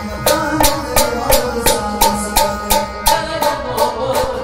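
Kashmiri folk wedding music, an instrumental passage: a harmonium plays a melody over held notes while a tumbaknari goblet drum keeps a steady beat of sharp strikes, about three to four a second.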